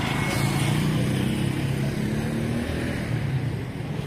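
Small motorcycle engine of a Philippine tricycle (motorcycle with passenger sidecar) running steadily as it passes close by. The engine note eases off about three seconds in.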